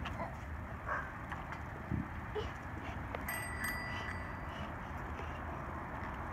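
Small tricycle wheels rolling over rough stamped concrete, a steady rumbling hiss as a child pedals. A thin high tone rings for about a second a little past halfway.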